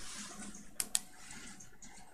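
Two quick clicks close together about a second in, typical of a computer mouse double-click, over faint room noise.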